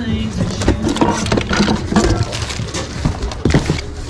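Loud music from a store's ceiling speaker, with frequent clacks and knocks of household items (a pan, plastic, cords) being shifted and rummaged through in a bin.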